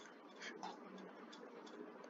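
Faint, irregular clicking from a computer mouse, several clicks a second, over a low hiss.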